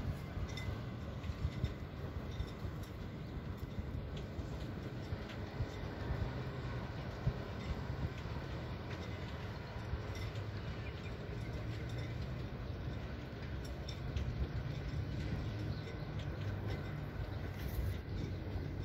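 A steady low rumble with a faint hiss and scattered light ticks over it, unchanging throughout.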